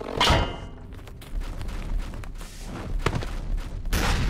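Cartoon sound effects: a thud just after the start, followed by a low rumble with a few light knocks.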